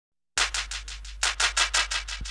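Hand percussion, shaker or scraper-like, playing a quick rhythmic pattern of short scratchy strokes, several a second, starting a moment in after silence, over a steady low hum: the percussion opening of a music track.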